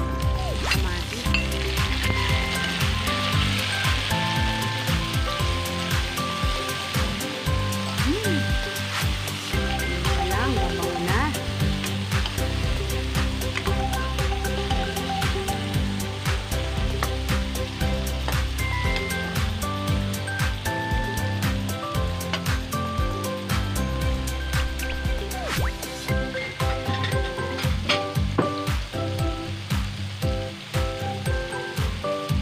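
Tomatoes and chopped aromatics sizzling in a hot oiled wok, with a metal spatula scraping and tapping on the pan as they are stirred. The sizzling is strongest in the first several seconds after the tomatoes go in. Background music plays over it.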